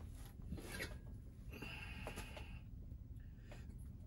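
Faint rustling and handling noise from a lifter working a loaded barbell on a weight bench, with a sound lasting about a second near the middle, over a low steady hum.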